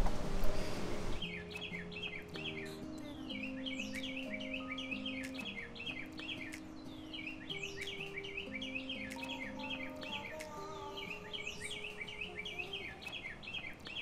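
Quiet background music: a slow melody of held notes, with a repeating high chirping figure running over it in short phrases.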